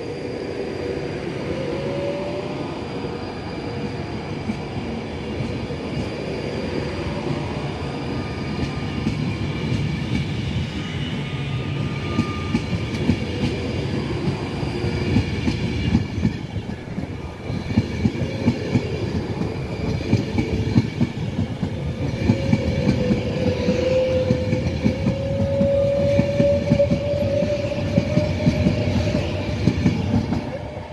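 Class 390 Pendolino electric train departing and accelerating past, with a rising whine from its traction motors. Its wheels click over the rail joints more and more densely from about halfway, and the sound builds steadily louder.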